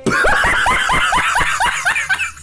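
A man laughing hard and shrilly: a rapid run of about a dozen high-pitched "ha-ha" bursts, about six a second, that fades near the end.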